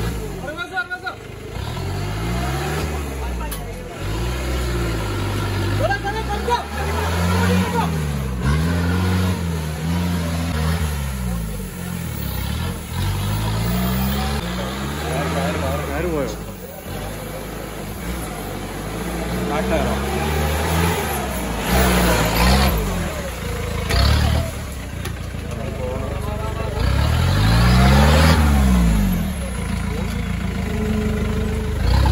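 Off-road 4x4 jeep's engine revving hard and easing off again and again as it is driven over rough, muddy ground, the pitch climbing and dropping with each burst. The longest, loudest rev comes near the end. Spectators' voices can be heard underneath.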